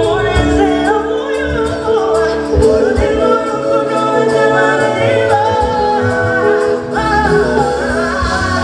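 A woman singing lead into a microphone over a live band, with drums and bass keeping a steady beat.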